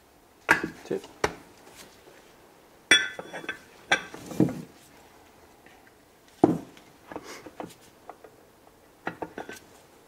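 Cylinder liners being handled and set into the bores of an aluminium engine block: a string of irregular metallic clinks and knocks, the one about three seconds in ringing briefly.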